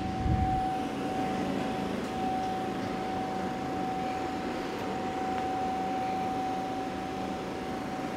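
A steady mechanical hum: a constant high tone over an even whooshing hiss, unchanging throughout.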